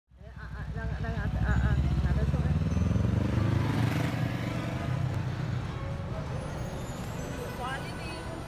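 City road traffic: a motor vehicle's low engine rumble builds over the first couple of seconds, stays loud until about four seconds in, then eases off.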